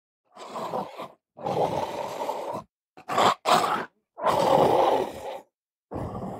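A dachshund digging with its front paws in coarse sand, scraping and flinging it. The sound comes in about five rough bursts with short silent gaps between them, loudest around the middle and just after four seconds.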